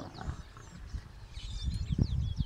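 Lions mating: low, irregular growling that swells near the end, with small birds chirping throughout.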